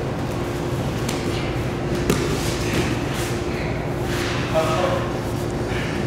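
Steady room hum under the scuffing and shifting of two bodies grappling on foam mats, with short rustling bursts and a brief voice sound from a grappler about four and a half seconds in.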